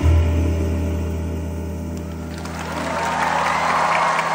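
The song's last chord rings out with a low sustained note that slowly fades, then audience applause breaks out a little over two seconds in and grows.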